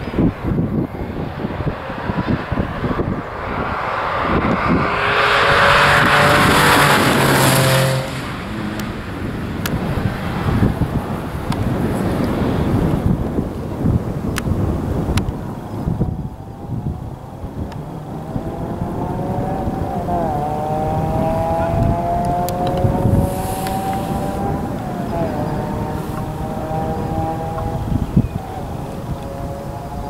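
A Porsche 911 rally car's flat-six engine, loudest as the car passes about four to eight seconds in, then its note rising and falling slowly through the second half.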